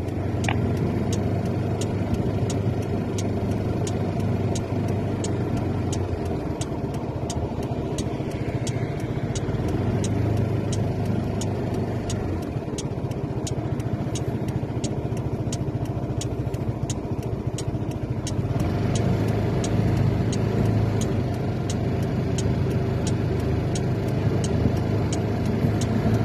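Car engine running at low speed, heard from inside the cabin as a steady low hum, growing slightly louder about two-thirds of the way in. A faint regular ticking, about two a second, runs alongside it.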